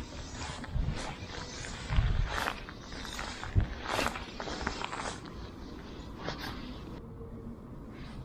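Wind buffeting the microphone, with irregular rustles and soft knocks, roughly one a second, as fly line is hand-retrieved and the rod and camera are handled.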